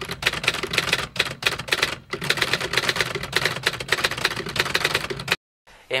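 Typewriter sound effect: a rapid run of key clacks as text is typed out letter by letter, stopping abruptly shortly before the end.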